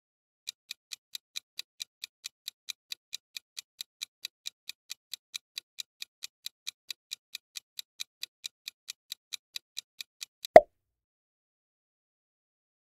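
Countdown-timer sound effect: a steady run of quick ticks, about four or five a second, for about ten seconds. It ends in a single louder pop that marks the answer being revealed.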